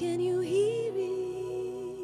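A woman singing a slow worship song into a microphone, rising to a long held note about half a second in, over soft sustained instrumental chords.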